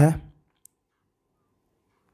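A man's voice trails off at the end of a word, followed by a single brief click and then near silence.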